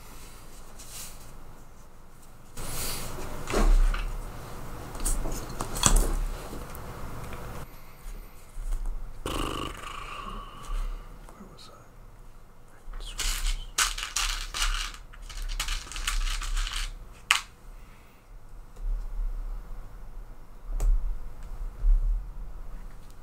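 Small parts being handled on a workbench: an irregular run of light clicks, knocks and rattles as 3D-printed plastic parts are moved about and small metal screws clink. There is one sharp click in the second half.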